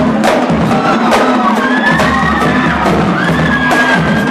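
Live marching drumline: snare drums struck in a dense pattern of stick strokes over a bass drum, with a crowd cheering and shouting around it.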